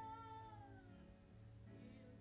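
A woman singing softly: a faint held note that slides down in pitch and fades out about a second in, with a new phrase starting near the end, over a quiet low sustained accompaniment.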